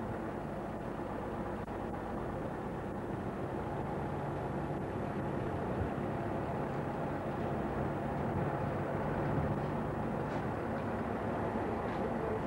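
DAF 2800 lorry's diesel engine running steadily as it pulls a wide load at walking pace, a low continuous hum that grows slightly louder toward the end.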